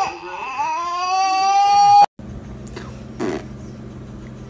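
Toddler crying: one long wail that climbs in pitch and grows louder, then cuts off abruptly about two seconds in. After that, a steady low hum with a short rustle.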